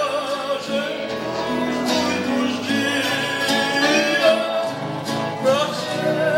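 A man singing a caipira song with vibrato on held notes, accompanied by strummed and plucked acoustic guitar and viola caipira.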